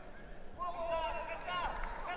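A distant voice shouting one long call across the wrestling hall, over faint, steady hall noise.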